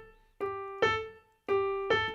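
Digital piano playing single notes of a major scale in a long-short swing rhythm: four notes, each ringing and fading before the next.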